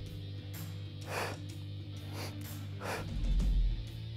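Quiet background music under a man's short, effortful breaths, about five of them, as he holds a hollow-body abdominal position.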